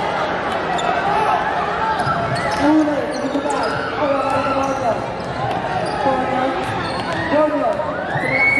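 A basketball bouncing on a hardwood court during play, under the steady overlapping chatter and calls of spectators and players.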